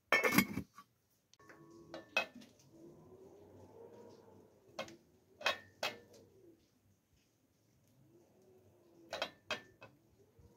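A copper lid set onto a copper cooking pot with a short metal clatter. This is followed by scattered light knocks as potatoes are put into a pot and vegetables are handled.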